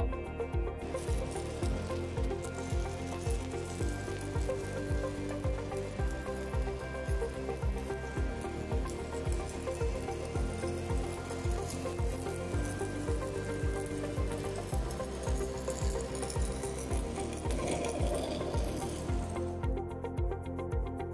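Background music with a steady beat, over the continuous sizzle of a stick-welding arc from a 1/8-inch 7018 electrode running a horizontal pass. The arc starts about a second in and stops just before the end.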